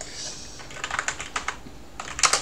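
Typing on a computer keyboard: a quick, irregular run of light key clicks that starts about half a second in.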